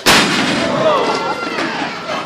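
A wrestler's body slamming down onto the ring canvas: one loud bang just after the start that rings on in the hall, followed by shouting voices.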